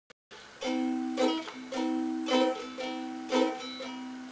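Ukulele strumming chords in a steady rhythm, a chord about every half second, beginning about half a second in.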